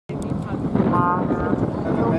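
Indistinct announcer's voice over outdoor loudspeakers, with low wind rumble on the microphone.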